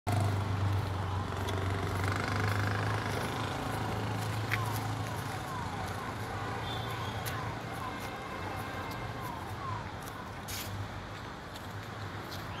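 Outdoor traffic ambience dominated by a steady low engine hum. A string of short falling chirps comes through in the middle, with a few sharp clicks.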